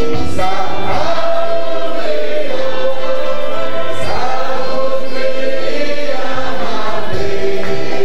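A church congregation singing a slow gospel worship song together, in long held notes that glide from one pitch to the next.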